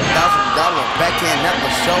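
Gym sound in a large hall: several voices talking over one another and a basketball bouncing on the court floor.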